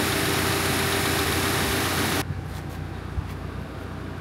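Subaru Crosstrek flat-four engine idling with the air conditioning running, under a loud steady hiss that cuts off abruptly about two seconds in, leaving only the quieter engine sound.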